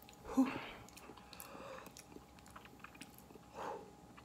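Faint lip smacks and small mouth clicks from someone tasting a spicy sauce, with a short breath near the end.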